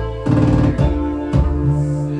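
Live post-funk band music: sustained keyboard chords over low bass notes, with a drum beat hitting regularly.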